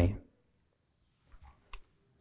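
A man's speaking voice trails off at the end of a word, then a near-silent pause broken by a few faint short clicks in the second half, such as mouth clicks before the next sentence.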